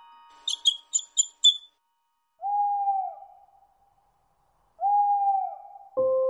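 Five quick high bird chirps, then two single owl hoots about two and a half seconds apart, each a steady note that dips at its end: cartoon sound effects.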